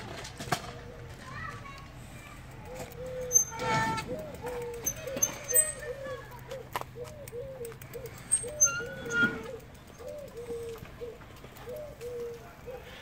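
Eurasian hoopoe calling: a low hoot repeated over and over at a steady pace, several notes a second, starting a couple of seconds in. Children's voices call out twice in the background.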